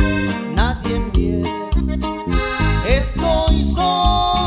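Norteño band playing: a button accordion leads over acoustic guitar, electric bass and drums in a steady beat.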